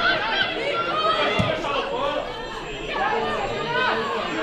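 Chatter of several voices at once at a football match, people on the pitch and the touchline calling and talking over one another. There is a single dull thump about a second and a half in.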